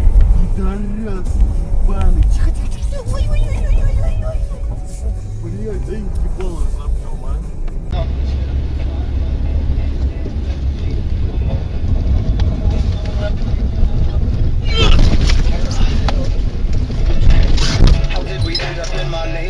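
Low, steady rumble of a vehicle driving, with people's voices over the first part. The sound changes abruptly about eight seconds in, and two short, loud noisy bursts come near the end.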